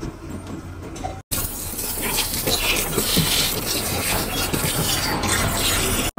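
A steady hiss of food cooking on the stove starts abruptly about a second in, after a short quieter stretch.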